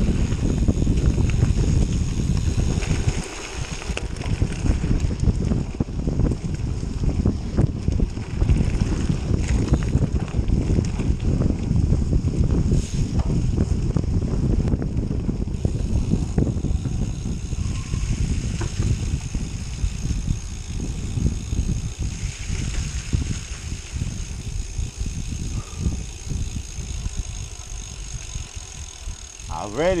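Wind buffeting the handlebar camera's microphone over the rumble and rattle of a Canyon Grail gravel bike rolling on a leaf-covered dirt trail.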